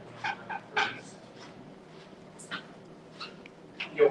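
Eraser rubbing on drawing paper in short squeaky strokes, three in quick succession about half a second in and a few more spaced out later.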